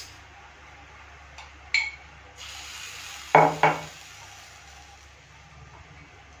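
Metal spoon clinking against a glass jar while scooping out sauce: a single sharp clink a little under two seconds in, then two louder ringing clinks in quick succession about a third of a second apart, past the three-second mark.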